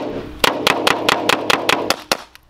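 Compressed-air pepperball rifle (AR-15-style) firing a rapid string of about nine shots, roughly five a second, the balls striking a clear polycarbonate police riot shield.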